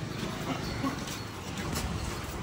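Busy market-lane ambience: a steady low murmur of distant voices with a few faint taps and clicks.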